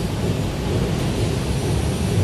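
Steady low rumble with an even hiss of room noise, no distinct events.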